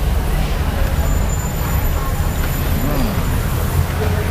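Steady low rumble of road traffic, with a faint voice-like rise and fall about three seconds in.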